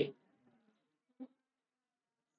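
The last syllable of a man's lecturing voice, then near silence broken once, about a second in, by a short faint pitched blip.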